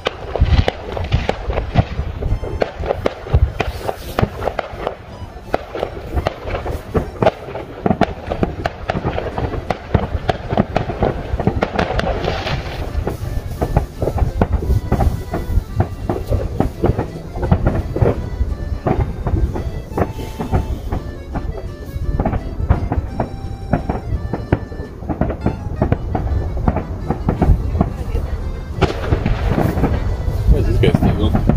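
Fireworks going off in a rapid, continuous series of bangs and crackles.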